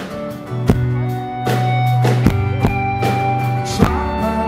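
Live band music: acoustic guitar over a long held low note, with a sharp drum hit about every second and a half.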